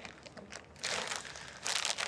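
Soft crinkling rustle of packaging being handled, in two short stretches: about a second in and again near the end.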